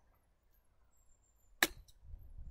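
Golf iron striking a ball off a practice mat on a chip shot: one sharp click about a second and a half in, followed by a fainter tick.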